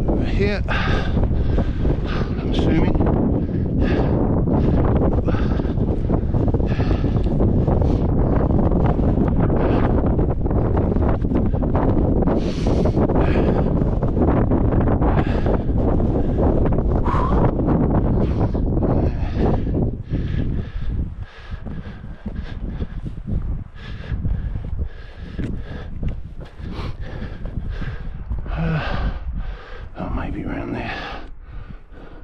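Wind buffeting the microphone, a heavy low rumble that eases off about twenty seconds in. Short sounds of a climber's movement and breathing close to the microphone recur about once a second as he scrambles over rock.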